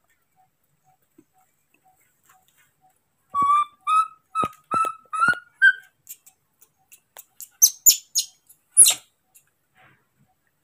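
Baby monkey calling: a run of about six short, clear calls that rise slightly in pitch, then a few sharper, higher-pitched squeaks, the loudest near the end.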